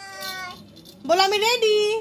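Two drawn-out, high, meow-like vocal calls: a short level one at the start, then a louder one about a second in that rises in pitch and holds.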